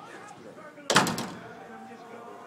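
A single loud bang on the squash court's glass wall about a second in, with a short rattle and a ringing tail.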